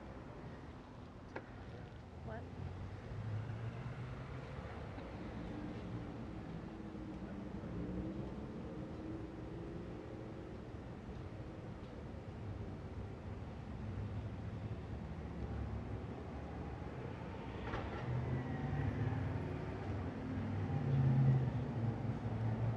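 Street traffic: cars passing on the road, a low engine and tyre rumble that swells a few seconds in and again louder near the end.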